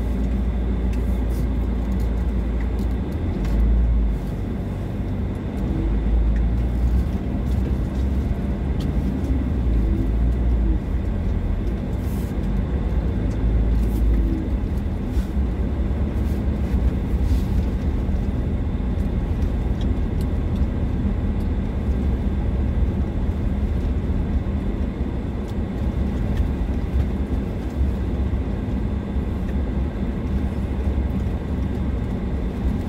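Car driving slowly along a dirt road, heard from inside the cabin: a steady low rumble of engine and tyres on gravel, with a few faint ticks.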